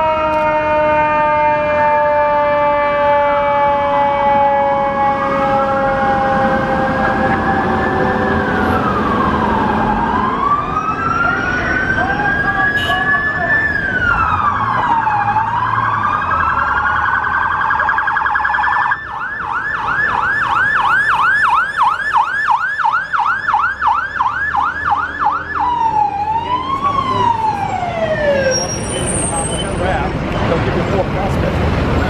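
Emergency-vehicle sirens passing close by. A siren tone slowly winds down early on while another siren wails up and down every couple of seconds. About two-thirds of the way through the wail switches to a rapid yelp, and a few wail sweeps follow near the end.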